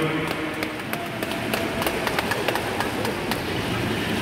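Swimmers splashing in front crawl in an indoor pool: an irregular patter of sharp splashes from arm strokes and kicks over a steady wash of churned water.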